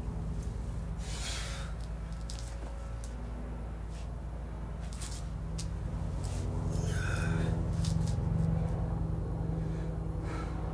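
A man's sharp breaths, a few short puffs with the clearest about a second in and near seven seconds, as he works through sit-ups, over a steady low hum that swells for a few seconds before the end.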